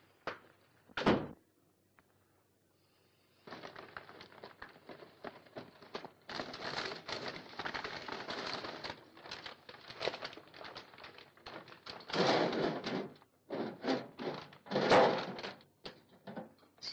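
Wrapping paper crackling and rustling as a string-tied parcel holding a birdcage is unwrapped by hand, a dense run of crinkles from about three and a half seconds in, loudest in two bursts near the end. A single sharp thump about a second in.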